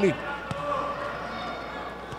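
A futsal ball is kicked once, a single short knock about half a second in, over the steady background of the court.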